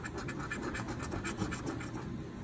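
A coin scratching the latex coating off a paper Loteria scratch-off lottery ticket, in rapid, even back-and-forth strokes, several a second.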